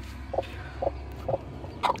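Broody crested hen sitting on eggs, giving short low clucks about twice a second, four in all.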